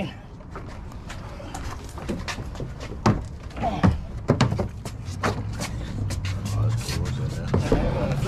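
Scattered knocks and scrapes of a particleboard furniture piece being laid on its back and slid into a box truck's cargo area, some sharp, over a low steady hum.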